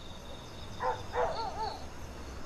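A few short animal calls in quick succession, starting a little under a second in, each rising and falling in pitch, over faint steady insect chirping.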